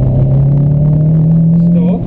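Renault Clio Sport rally car's engine pulling hard under acceleration, heard from inside the cabin, its pitch rising steadily and then dropping away sharply right at the end.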